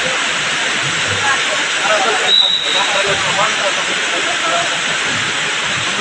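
A steady loud hiss covers the court sound, with faint scattered voices of players and spectators under it. A short, thin high tone sounds about two and a half seconds in.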